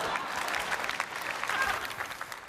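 Studio audience applauding, the clapping slowly dying away.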